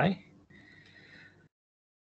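A man's voice finishing a drawn-out word, then a faint, thin high sound for about a second, then silence.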